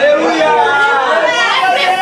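Loud, overlapping voices of a congregation praying aloud at once, with a woman's voice shouting over them.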